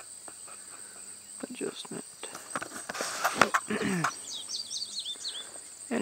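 Field insects trilling in a steady high drone, with scattered rustles and clicks of handling. There is a brief faint voice about four seconds in, then a quick run of short high chirps.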